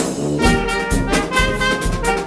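Fanfare band playing a paso doble live: brass and reeds (trumpet, saxophones, clarinet) over a sousaphone bass line and drums. The low bass-and-drum beat falls about twice a second.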